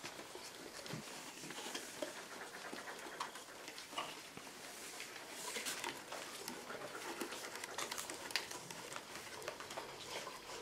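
Faint, scattered rustling and small clicks of paper, pencils and scissors being handled on classroom tables during paper crafting.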